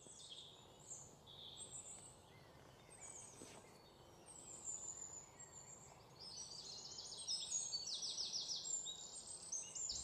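Wild birds singing: scattered faint high chirps, then from about six seconds in a series of rapid trills that grow louder.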